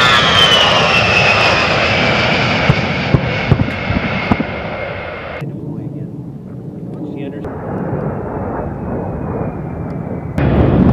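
A-10 Thunderbolt II's twin TF34 turbofan engines whining on a low pass, the whine falling steadily in pitch as the jet goes by. About halfway through the sound turns to a lower rumble, and then a thinner engine whine comes in that sinks slowly.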